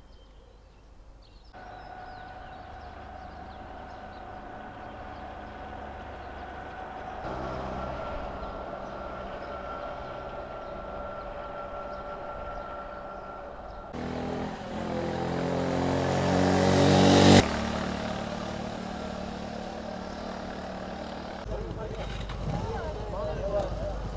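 Motor vehicle engines on a largely empty road. A low, steady engine hum gives way to a vehicle passing close, its sound rising for about three seconds to the loudest point before cutting off suddenly.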